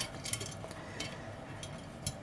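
Faint light clicks and clinks of thin sheet metal and wire as a soldering iron stand and its coil holder are fitted together by hand.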